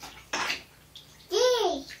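A brief swish of bath water as a toddler's arm moves through it, followed near the end by the toddler saying a short word ("D") in a rising-then-falling voice.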